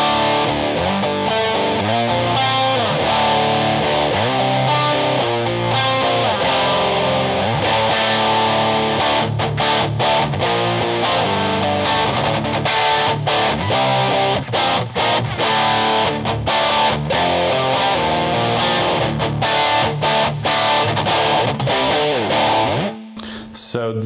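Electric guitar tuned to drop D, played through heavy distortion: a string of chords, low and full, that changes shape every second or so, then stops abruptly about a second before the end.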